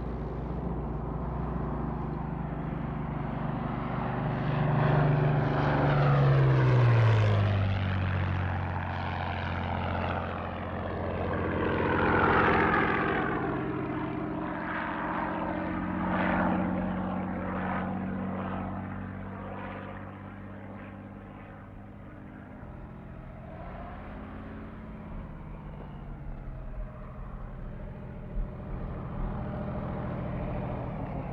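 Piston-engined P-40 fighter plane flying past, its propeller engine drone dropping in pitch as it goes by about six seconds in, then swelling again on further passes before fading. A few light clicks near the end.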